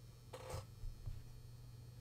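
Quiet room tone with a steady low electrical hum, and one brief soft noise about half a second in.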